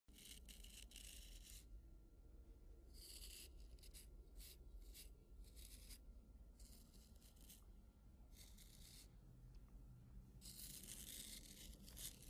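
A straight razor scraping across stubble in a series of faint, irregular rasping strokes, over a steady low rumble.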